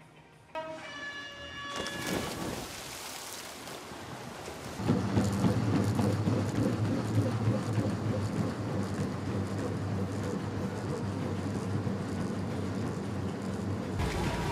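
A row of treadmills running with athletes on them: a steady, loud rumble of belts and motors with fast footfalls on the decks, which comes in abruptly about five seconds in. Before it comes a brief ringing tone of several notes, then a rising wash of noise.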